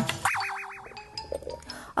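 Cartoon-style wobbling 'boing' sound effect in a short TV segment jingle: after an opening hit, a pitch swings rapidly up and down about six times in under a second, then fades.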